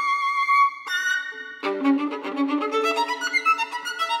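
Solo violin in a contemporary classical piece. A high note is held with vibrato, then a quieter short note follows. After that comes a quicker passage of bowed notes, often two or more sounding at once.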